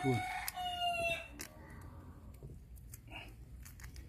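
A rooster crowing in the background: one long call that falls slightly in pitch and ends about a second in, followed by a few faint clicks.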